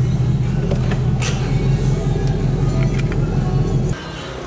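Chevrolet Camaro engine idling, a steady low rumble heard from inside the cabin, with music playing over it. The rumble drops off suddenly just before the end.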